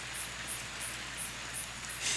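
Outdoor night ambience: faint high insect chirping repeating about three times a second over a steady hiss and a low hum.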